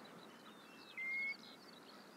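Birds calling: scattered faint high chirps and twitters, with one clear, short, slightly rising whistle about a second in that stands out above the rest.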